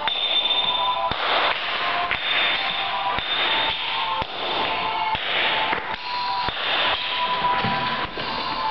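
Hand hammer striking a steel chisel into a stone block, about one sharp blow a second, some blows followed by a short gritty burst of chipping stone. Background music with held notes plays underneath.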